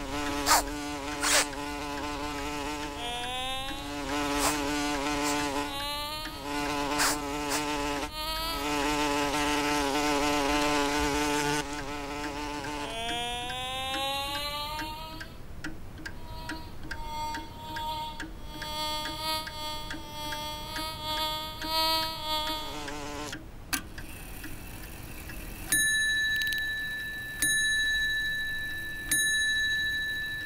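Cartoon insect flight buzzing: a bee and a fly, voiced as a pitched, wavering drone. It comes in stretches of a few seconds, sometimes gliding up in pitch and turning higher and steadier after the middle. Near the end it gives way to a steady high ringing tone with a sharp strike about every second and a half.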